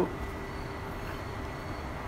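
Steady low background hum and rumble with a faint constant tone running under it, with no distinct event.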